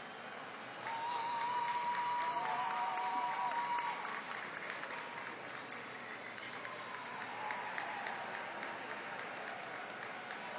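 Audience applauding, with long held whoops over the clapping. It swells about a second in, is loudest for the next few seconds, and then eases to lighter clapping.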